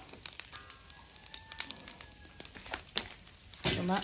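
Charcoal fire crackling with irregular sharp clicks as whole breadfruit roast on the hot coals.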